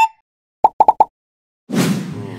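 Cartoon sound effects added in editing: a quick rising glide at the start, then four short pitched plops about a second in, then a loud whoosh near the end that leads into a white-flash transition.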